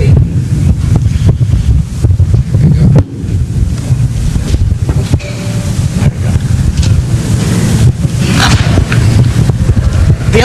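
A handheld microphone being handled and passed along. It gives a loud, low rumble with scattered knocks and clicks.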